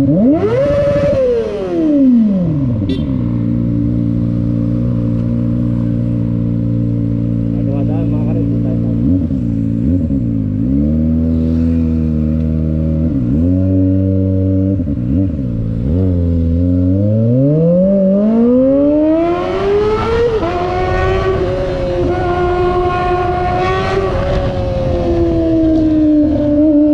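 Kawasaki Ninja sport bike's engine revved hard: one sharp rev to high rpm that falls back to idle, then a few short throttle blips, then a long climb as the bike accelerates away and holds high revs.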